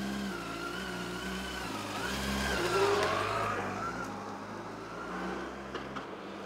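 A large touring motorcycle's engine pulling away and accelerating, its note rising in pitch about two to three seconds in, then fading as the bike rides off down the street.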